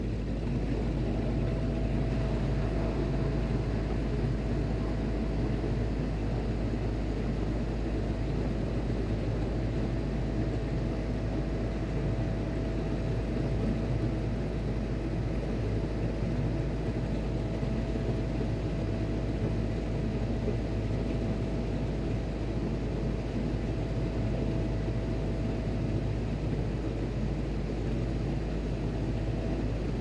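Steady drone of shipboard machinery: a deep low hum under an even rumble, with a faint steady whine that comes in about a second in and fades near the end.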